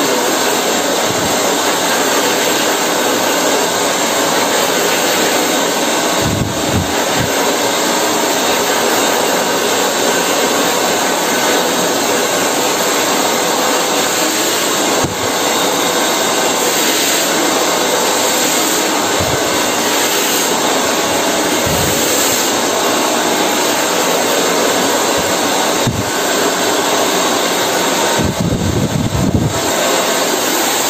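Handheld hair dryer running steadily, a loud continuous rush of air and motor noise as it is worked over the hair with a round brush. A few brief low rumbles break in now and then, the longest near the end.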